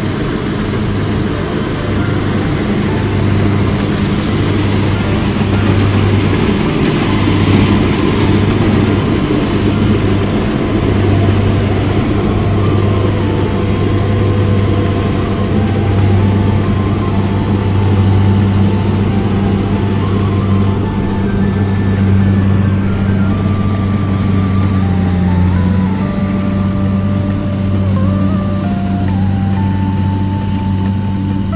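Kubota combine harvester's diesel engine running steadily under load while it harvests rice, a constant low drone. Background music with a simple melody comes in faintly about halfway through.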